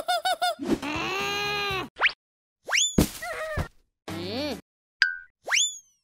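A string of cartoon sound effects: quick squeaky chirps, a held squeaky note, then several fast rising boing-like sweeps, with a sharp knock about three seconds in and a short wobbling note just after four seconds.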